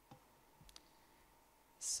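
Near-quiet room tone with a few faint, short clicks in the first second. Near the end a woman's voice begins speaking, its opening hiss the loudest sound.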